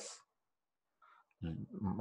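A man speaking: one word trails off, there is a pause of about a second, and his voice starts again about a second and a half in.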